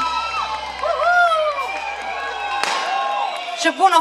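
A live band's final chord ringing out, with a voice calling out over it, then cutting off suddenly a little under three seconds in; a voice starts speaking into the microphone near the end.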